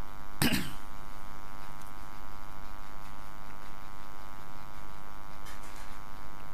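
Steady electrical mains hum with a buzzing edge on the recording, and one brief cough about half a second in.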